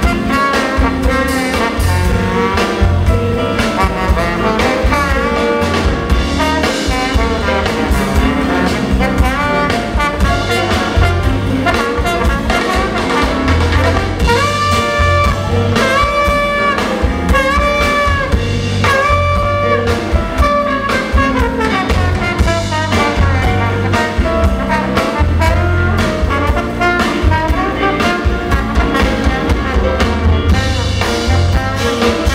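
Live jazz-blues band playing a minor-key blues, with a trombone taking a solo over bass guitar and rhythm section. The trombone plays sliding, bending phrases, and about halfway through it plays a run of four held notes at the same pitch.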